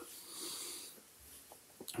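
A man's faint breath drawn in during a pause in his talk, followed by a couple of small mouth clicks just before he speaks again.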